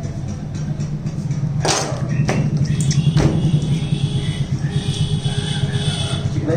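A knife knocking sharply against the cutting surface three times, between about one and a half and three seconds in, while a whole chicken is being cut up, over a steady low hum.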